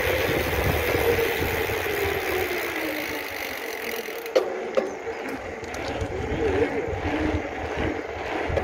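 Wind rushing over the microphone and tyre noise from a mountain bike rolling fast down a paved road. The rush eases about halfway through, with a click and then brief voices.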